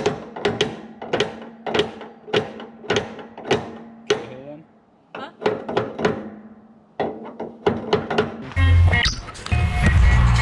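Sledgehammer blows on steel, about one and a half strikes a second, driving a pin into an excavator thumb's linkage. The blows pause briefly near five seconds and come quicker just before music with a heavy bass starts near the end.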